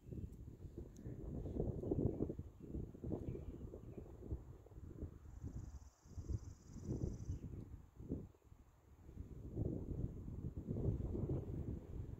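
Wind buffeting the microphone outdoors: low, uneven gusts that swell and fade, dropping away briefly about halfway through and again a couple of seconds later.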